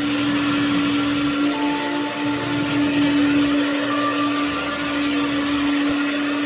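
Carpet-cleaning extraction machine running steadily, its vacuum humming on one steady tone over a rushing hiss as the wand is drawn across the rug to pull out the rinse water.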